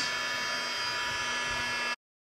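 Craft embossing heat gun running steadily, a hum with a high whine, as it heats embossing paste sprinkled with embossing powder on cardstock; the sound cuts off suddenly near the end.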